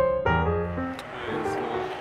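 Piano background music that breaks off about two-thirds of a second in, giving way to outdoor noise with a sharp click about a second in and faint voices near the end.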